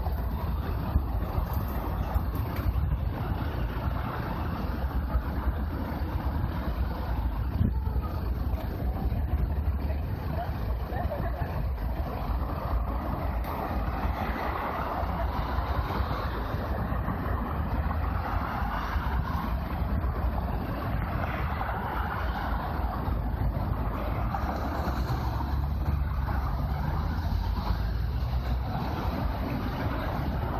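Steady street noise of road traffic at a city intersection, with a heavy low rumble throughout.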